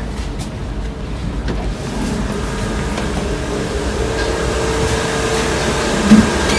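Steady drone of shipboard machinery and ventilation with a faint hum, growing a little louder about two seconds in.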